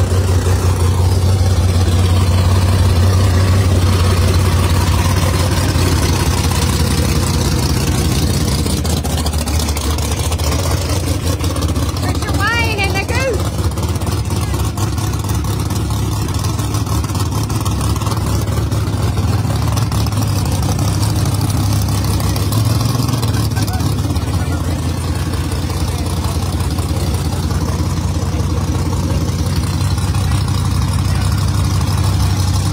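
Drag race car engine idling loudly close by, a deep steady note, with a short rise in revs about two-thirds of the way through.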